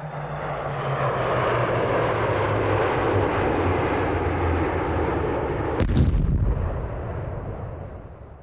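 A long rumbling, explosion-like blast that fades in, with one heavy boom about six seconds in, then fades away.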